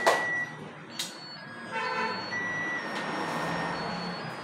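Thin electronic beeping tones that stop and start and step between a few pitches, with a sharp click about a second in.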